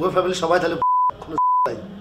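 Two short, steady 1 kHz censor bleeps about half a second apart in the middle of a man's speech. The audio around each tone is blanked entirely, so the bleeps cover words that have been cut out.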